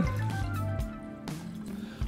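Water poured from a plastic measuring jug into a Thermomix's steel mixing bowl, with background music playing.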